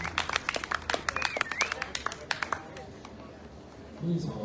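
A small audience clapping at the end of a rock song, with some voices among the claps; the clapping thins out and dies away about two and a half seconds in.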